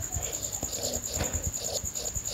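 Stylus tapping and sliding on a tablet screen while numbers are written, giving a few soft, irregular knocks. A high, steady, evenly pulsing tone sits in the background throughout.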